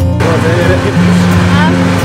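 Acoustic guitar music gives way, about a fifth of a second in, to the steady rush of wind and running noise from riding in an open, canopied cart.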